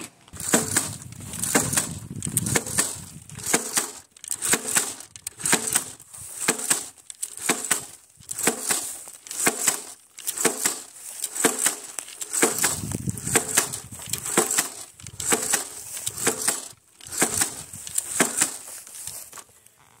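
Manual jab planter (matraca) stabbed into dry, straw-mulched soil again and again, about once a second. Each stroke is a short cluster of clacks and crunches as the blades bite the ground and the seed-metering mechanism snaps to drop corn seed.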